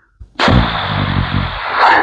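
A long, loud breathy exhale blown onto a clip-on microphone, starting abruptly just under half a second in and lasting about a second and a half.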